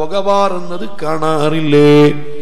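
A man's voice chanting in a sing-song delivery, with long held notes that bend in pitch; the loudest held note comes near the end.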